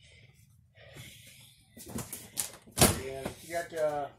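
A few short knocks and clicks, the sharpest about three seconds in, followed by brief low speech near the end.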